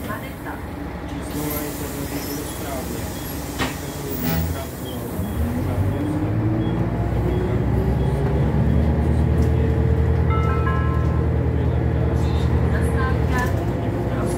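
Renault Citybus 12M diesel engine heard from inside the passenger cabin. It runs quietly at first, with a few short clicks. About five seconds in it rises in pitch and grows louder as the bus accelerates, settling into a loud, steady drone.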